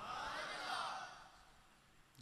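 A man breathing in through a microphone between sentences: one short, soft hiss of breath in the first second.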